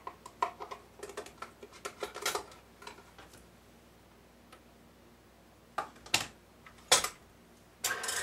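A run of light taps and clicks as egg yolks are poured and tapped out of a small glass bowl into a stand mixer's metal bowl. A quiet spell follows, then three sharper knocks near the end.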